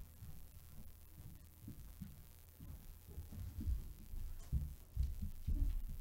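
Low, irregular thumps and rustling handling noise picked up by a pulpit microphone as a cloth face mask is pulled off and folded by hand, getting louder and more frequent in the second half.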